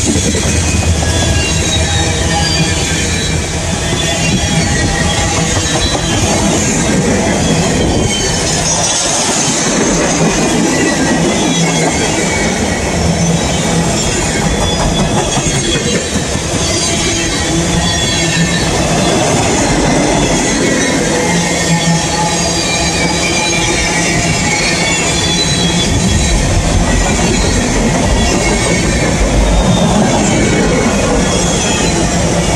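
Freight train cars (tank cars, covered hoppers, flatcars and boxcars) rolling past at close range: a loud, steady rumble of steel wheels on rail with high, wavering wheel squeal over it.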